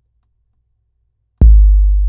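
One deep 808 bass drum note with a kick drum sample layered under it, played from a Maschine pad: a sharp attack about 1.4 s in, then a loud, very low sustained tone that cuts off suddenly.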